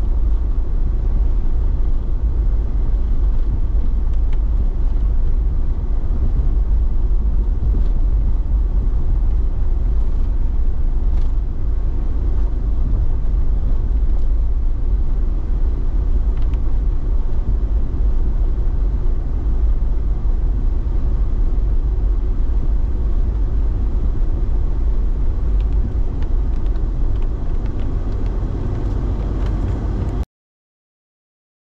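Vehicle driving along a dirt road, heard from inside the cabin: a steady low rumble of engine and tyres, with a few faint ticks.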